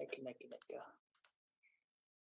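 A faint, brief sound from a person's voice or mouth lasting about a second, then a few soft clicks, then near silence.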